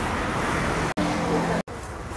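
Street traffic noise heard at an outdoor market stall, a steady rumble and hiss. It breaks off abruptly twice at editing cuts, and a short steady low hum sounds about a second in.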